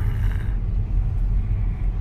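Steady low rumble of a car's engine and tyre noise heard from inside the cabin while driving.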